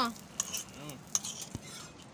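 Metal spatula clinking and scraping against a frying pan and steel plate as an omelette is lifted out and served, with a few sharp clinks.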